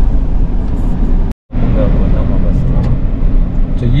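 Steady low rumble of road and engine noise inside the cab of a Toyota Hilux Revo pickup on the move. The sound cuts out completely for a moment about a second and a half in, then resumes.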